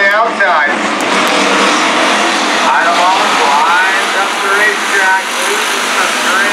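Hobby stock race cars' V8 engines running together on a dirt oval, the pitch rising and falling as the drivers rev them. A public-address announcer's voice is mixed in.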